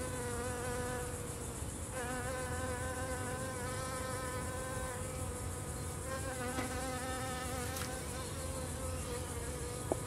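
A flying insect buzzing steadily close by, a hum that wavers slightly in pitch and briefly fades twice before coming back.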